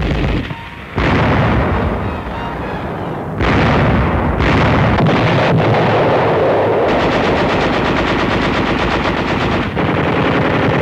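Continuous gunfire and shell blasts, with a sharp surge about a second in and another near three and a half seconds. From about seven seconds in it becomes steady, rapid machine-gun fire.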